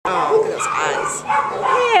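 Small beagle–Chihuahua mix dog whining and yipping in high, wavering cries.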